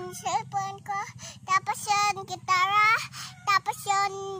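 A young girl singing in short, gliding phrases.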